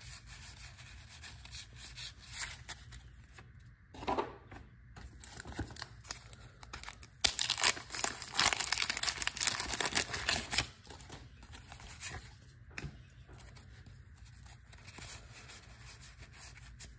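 A 1987 Donruss wax-paper pack wrapper being torn open, with loud crinkling and tearing for about three seconds around the middle. Before and after, there is the softer rub of cardboard trading cards sliding against each other in the hands.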